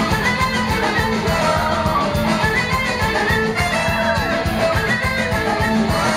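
Live rock band playing loud, with electric guitar over a fast steady beat.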